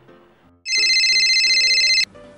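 Phone ringing: a loud, rapidly warbling electronic ringtone that starts suddenly about half a second in and cuts off abruptly at the end, over soft background music.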